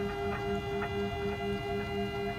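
Rotary engraving machine running under its controller: a steady machine whine holding one pitch, with a lower hum pulsing on and off several times a second and faint ticks about every half second.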